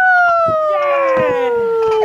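A person's long, high 'woo' cheer, held as one note that slides slowly down in pitch.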